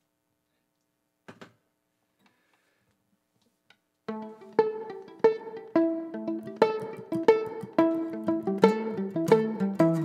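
Near silence with one faint knock, then about four seconds in an acoustic guitar and a fiddle start a song's intro: plucked notes in a steady beat.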